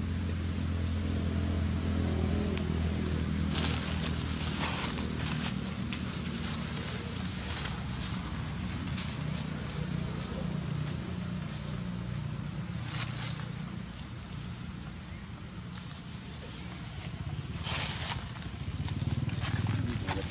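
Dry fallen leaves rustling and crunching in short bursts as young macaques wrestle on them, over a steady low hum.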